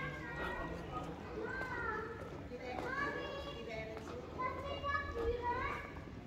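Children playing, several high voices calling and chattering over one another throughout.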